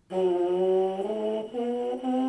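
A trombone mouthpiece buzzed on its own: a sustained pitched buzz that steps up note by note, three held notes with a fourth starting at the end. It is an ascending Sol-La-Ti-Do range-building exercise.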